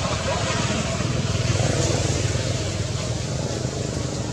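A steady low rumble under an even hiss, like a motor vehicle running nearby, with faint voices in the background.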